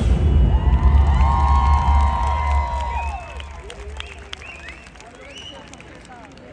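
Amplified dance music with a heavy bass line fades out over the first three seconds. Audience cheering and whooping follows, as short scattered calls.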